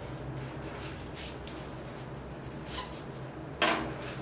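Steady low hum of room equipment, with a brief knock just before the end.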